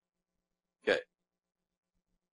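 A man says one short "okay" about a second in; the rest is near silence.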